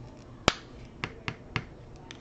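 Four sharp clicks or taps on the work surface. The first, about half a second in, is the loudest, and three fainter ones follow roughly a quarter-second apart.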